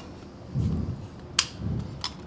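A single sharp metallic click from an Archon Type B polymer pistol being handled, a little past halfway through, among faint low murmured voices.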